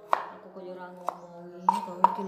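Kitchen knife slicing through turmeric root onto a wooden chopping board: three sharp chops, one near the start, one about a second in and one near the end.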